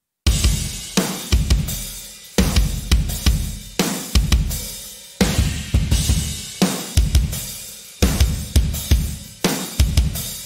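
Sampled kick drum from Drum Vault Kick Arsenal's hybrid room, triggered in a rock drum groove with snare, hi-hat and cymbals, while the kick's in and out mic channels are blended against each other. The groove starts about a quarter second in, with the loud, deep kick hits leading the mix.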